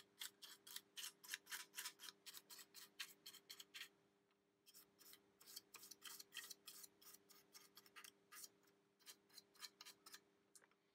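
Paintbrush bristles scrubbing and dabbing weathering wash into the plastic hopper sides of a model wagon: a quick run of faint, scratchy strokes, about four a second, pausing briefly about four seconds in.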